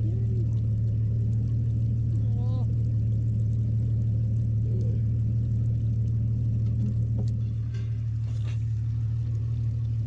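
A bass boat's motor running with a steady low hum, with a few brief faint voice sounds over it.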